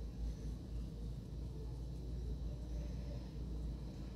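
Quiet background room tone: a steady low rumble with a faint hiss, and no distinct sound from the crochet hook and thread.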